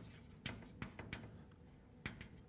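Chalk writing on a blackboard: faint scratching strokes with a few sharp taps as the chalk strikes the board.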